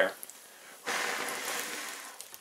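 A person blowing hard to put out the burning yarn hair of a paper puppet: one rushing breath starting about a second in and fading away over the next second.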